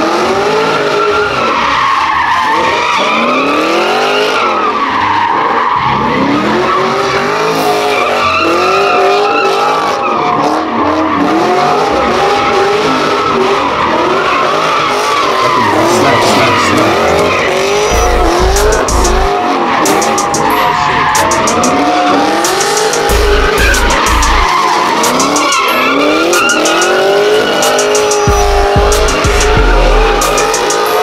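A car spinning donuts in a burnout on asphalt: the tyres squeal without a break while the engine revs rise and fall over and over as the driver works the throttle.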